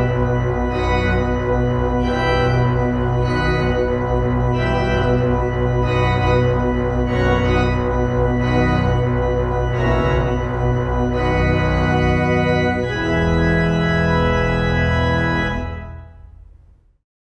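Organ music: a series of full sustained chords over a deep bass line, changing about once a second, then a long held final chord that fades out at the end.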